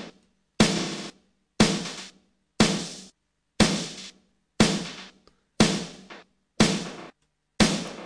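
Drum loop run through Ableton Live 8's Beat Repeat effect, with a filter on the repeats. Hits come at an even pace of about one a second, each starting sharply and dying away over about half a second.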